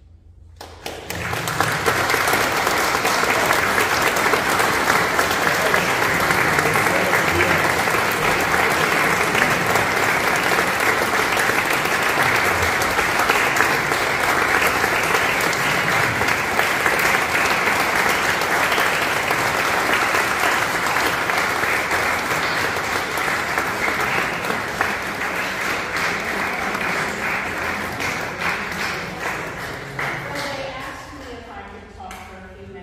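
Audience applauding: the clapping starts about a second in after a moment of quiet, holds steady, and eases slightly near the end.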